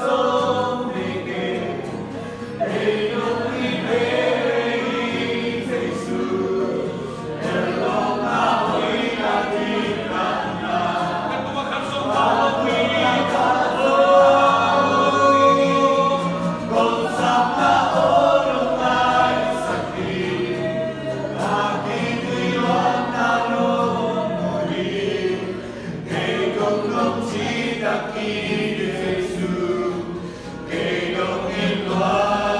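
Many voices singing a worship song together, a group of worshippers in full voice.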